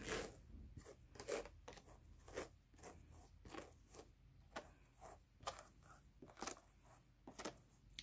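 Faint, irregular scratchy rustling of Jacob wool being pulled off the fine wire teeth of hand carders and handled.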